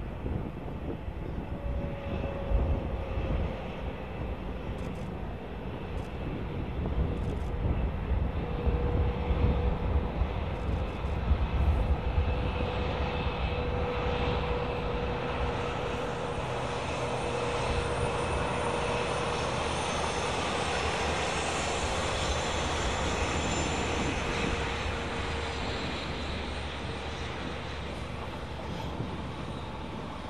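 Diesel locomotives hauling a passenger train past at a distance: a steady engine drone with a high, even whine.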